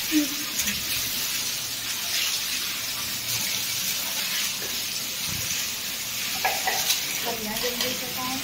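Running water, a steady even hiss, from water being used to wash down the house.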